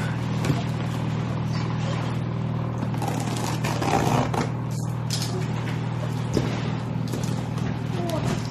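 A utility knife slits the packing tape on a large cardboard box, giving irregular scraping and crackling of tape and cardboard. A steady low hum runs underneath.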